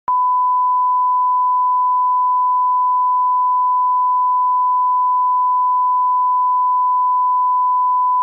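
Steady 1 kHz line-up test tone accompanying colour bars: a single loud, unbroken beep at one pitch. It is the reference signal used to set audio levels on a broadcast or tape.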